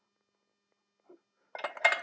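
Near silence while a hand arbor press pushes the steel shaft into a brushless motor's bell. A few light metallic clinks follow near the end as the shaft goes home.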